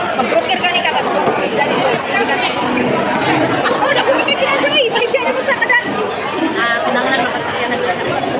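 Indistinct chatter of many overlapping voices in a busy food-court dining hall, with no one voice clear.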